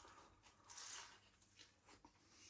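Faint mouth sounds of biting into and chewing a flaky puff-pastry sausage roll, a soft crackly rustle under a second in and a small click near the end.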